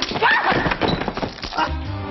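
A clattering crash of several quick knocks and breaking sounds, followed by background music starting near the end.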